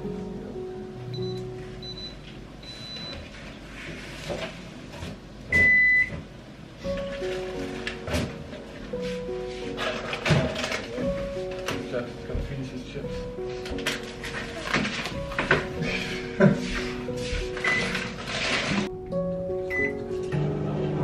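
Soft background music, with an electronic kitchen appliance beeping: a few short high beeps, then one longer, louder beep about six seconds in. Kitchen clatter and clinks follow through the second half.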